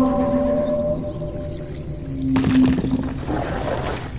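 Spooky Halloween intro sound effects: several long, held, slightly gliding wailing tones, then a sudden noisy burst with another held tone about two and a half seconds in.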